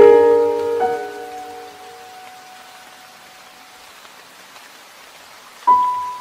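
Slow piano notes ringing out and fading over a steady hiss of rain. One more note sounds about a second in, then only the rain is left until a new note is struck near the end.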